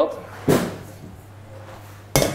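A single knock of a kitchen item set down on a stainless steel worktop, dying away briefly, over a low steady hum.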